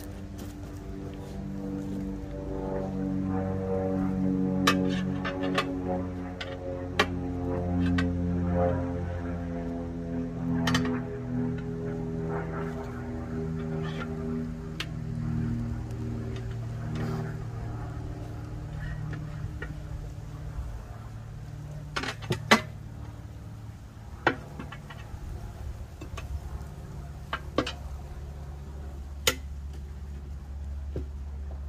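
Music with sustained, shifting chords that thin out in the second half. Over it come occasional sharp metallic clinks of tire irons against a steel tractor wheel rim as a tire is worked off.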